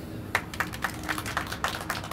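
Light applause from a small group of people: a scatter of individual hand claps, starting about a third of a second in.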